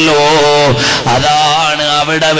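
A man's voice chanting in long, wavering sung phrases, with a brief pause for breath about a second in.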